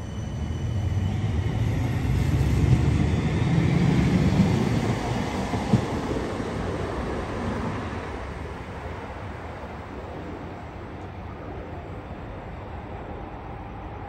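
CAF Urbos 3 light rail tram pulling away from the platform: a low running rumble that swells over the first few seconds, then fades steadily as the tram moves off. A single sharp knock comes about six seconds in.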